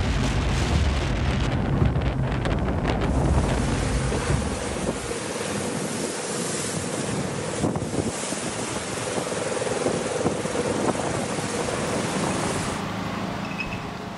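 Storm wind buffeting the microphone with heavy rumble over rough, choppy harbour water for the first four to five seconds. Then a steady rushing of churning storm-surge flood water.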